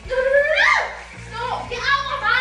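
High-pitched, child-like voices with sharply rising and falling pitch over background music, with a steady low hum underneath.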